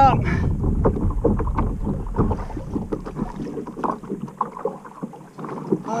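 Wind rumbling on the microphone over water lapping against a plastic kayak hull, with many small scattered knocks and splashes. It dips a little about five seconds in.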